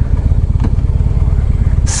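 2015 Harley-Davidson Breakout's 1690cc air-cooled V-twin running steadily at road speed on its stock exhaust, heard from the saddle under wind noise on the microphone.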